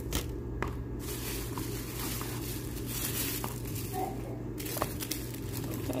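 Tissue paper rustling and crinkling as it is handled and pulled out of a box, a continuous papery rustle throughout.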